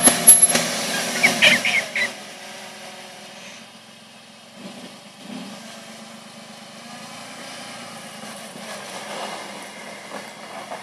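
Jeep Liberty's engine working on a steep dirt bank, with a loud burst of knocks, clatter and crunching for the first two seconds as the tyres and underbody meet rock and earth. The engine then drops to a low idle, rising briefly twice as the Jeep comes back down the slope.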